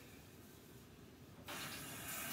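Quiet room tone, then about one and a half seconds in a water tap is turned on and runs with a steady hiss.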